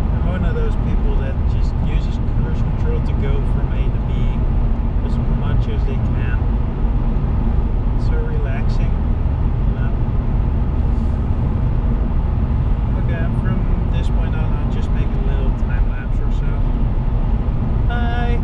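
Steady engine and tyre drone inside the cabin of a 2004 Seat Ibiza 1.8 20V turbo cruising on an open road, with faint voices over it.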